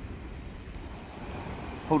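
Steady low background rumble with a faint even hiss and no distinct event. A man's voice begins right at the end.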